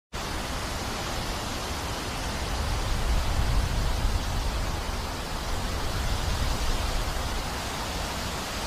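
Wind blowing across an outdoor microphone: a steady rushing noise with a heavy low rumble that swells briefly about three seconds in.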